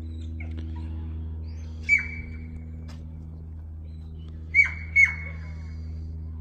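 Herding whistle blown as commands to a sheepdog working sheep: three short, high, steady blasts, one about two seconds in and two in quick succession near the end.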